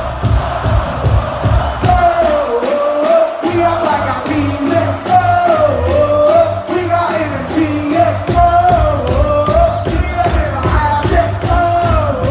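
Loud live dance-pop music over a festival stage PA, heard from the stage: a steady beat under a wavering melodic line. The bass drops out briefly and comes back in strongly about three and a half seconds in.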